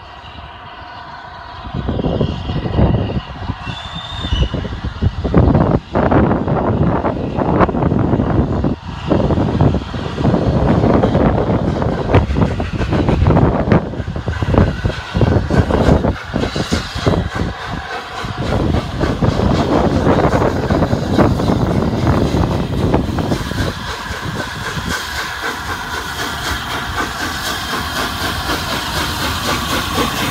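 The LNER A3 Pacific steam locomotive Flying Scotsman, a three-cylinder engine, working under steam as it approaches and draws level: the exhaust and hissing steam are loud from about two seconds in, with uneven surges, and become steadier near the end as the engine comes alongside.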